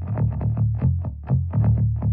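Instrumental psychedelic rock: a fast, evenly picked riff on distorted electric guitar over bass, about six or seven strokes a second.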